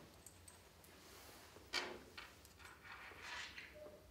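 Faint handling noise from a cloth draw bag of numbered balls: a soft click about two seconds in and light rustling as the bag is lifted and set down on the table.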